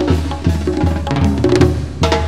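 Sinaloan banda music: tuba bass notes and the drums play a steady beat, with sustained brass or reed chords underneath.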